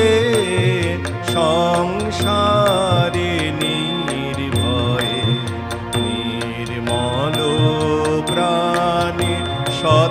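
A man singing a Bengali song into a microphone, with long held notes that glide and bend, over steady low accompaniment.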